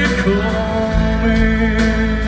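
A live rock band playing: electric guitar, bass and keyboards over drums, with a sharp cymbal-like hit at the start and another near the end.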